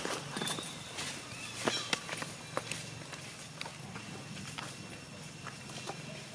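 Macaques shifting about on dry leaf litter and handling a leaf: scattered light clicks and crackles, with a sharp click right at the start.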